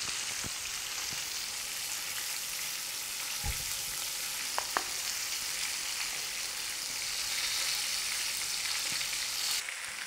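Flour-coated chicken breasts shallow-frying in hot oil in a frying pan, a steady sizzle. A few light clicks come near the middle.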